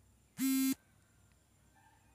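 A single short buzzy electronic beep of steady pitch, starting and stopping abruptly about half a second in; otherwise faint room tone.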